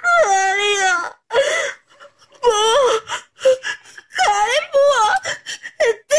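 A girl wailing and sobbing: long, pitched cries that waver, break off and start again several times.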